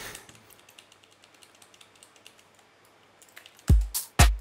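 Faint computer keyboard and mouse clicks, then near the end an electronic kick drum starts playing back: a loud, deep thump that drops quickly in pitch, with a sharp high click on top.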